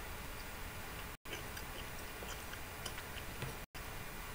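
Faint, irregular small mouth clicks of someone chewing a bread roll, over a steady microphone hiss. The audio cuts out completely for an instant about a second in and again near the end.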